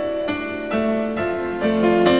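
Grand piano playing the introduction to a song, a new note or chord struck about every half second and left to ring.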